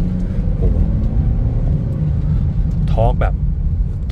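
Inside the cabin of a BMW X3 xDrive20d, its 2.0-litre four-cylinder diesel is pulling under acceleration, a steady low rumble mixed with tyre noise from the wet road.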